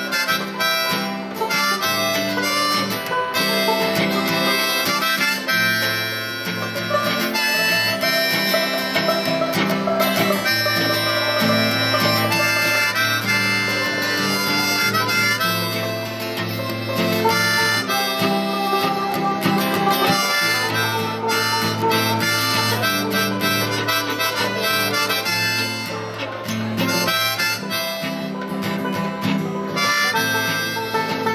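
Live acoustic string band playing an instrumental passage: a bowed fiddle carrying sustained melody lines over strummed acoustic guitar and picked banjo.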